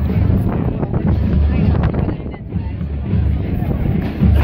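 College marching band playing on the field, with heavy wind rumble on the microphone and a short lull about two and a half seconds in.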